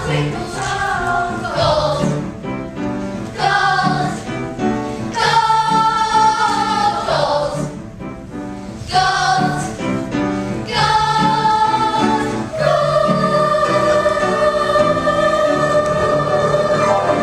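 A children's chorus singing a musical-theatre number with accompaniment, in phrases with short breaks. Near the end the voices hold one long note.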